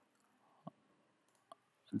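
Two computer mouse clicks, a sharper one about two-thirds of a second in and a fainter one under a second later; otherwise near silence.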